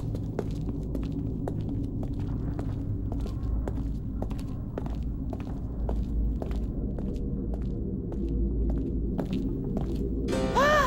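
Cartoon sound track: a low, steady droning music bed, with quick, soft ticks of sneaking footsteps over it.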